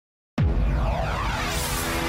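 Silence, then about a third of a second in, an electronic logo sound ident starts abruptly and loudly: a deep low rumble under pitch sweeps that glide up and down.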